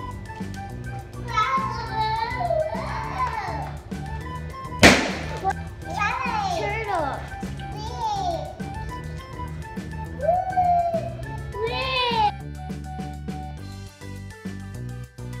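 Background music with a steady beat under children's high-pitched excited voices, and one sharp pop about five seconds in: a rubber balloon bursting.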